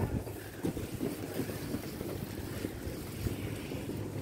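Wind buffeting a handheld camera's microphone while walking: an irregular low rumble that rises and falls in gusts.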